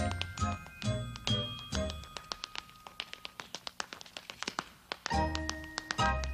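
Tap dancing to an orchestra: quick, sharp tap-shoe clicks on a stage floor over the band. In the middle the band thins out, leaving a couple of seconds of rapid taps almost alone, then the full orchestra comes back in near the end.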